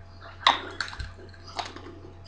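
A few short crunches of hard, coated chilli nuts being chewed close to the microphone. The first, about half a second in, is the loudest.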